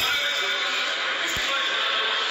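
Crowd of spectators in a large indoor sports hall, many voices calling and chattering at once in a steady, echoing din. A single dull thump stands out about one and a half seconds in.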